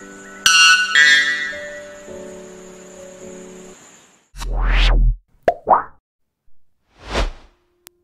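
A white bellbird's loud, ringing two-note call about half a second in, over soft background music that fades out by about four seconds. Then come three whooshing transition sound effects, the first with a heavy bass and the loudest.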